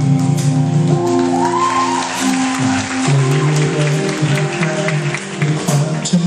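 Live rock-pop band playing on stage: sustained chords over drums and cymbals, with a male voice singing a wavering line into a microphone in the middle stretch.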